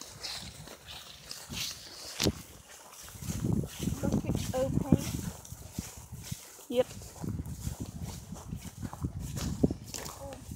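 Footsteps through dry grass, with irregular low rumbling and knocking handling noise on the phone's microphone from about three seconds in.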